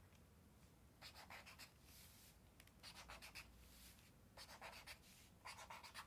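Faint pen strokes on paper, coming in four short bursts of scratching: about a second in, around three seconds, between four and five seconds, and at the very end.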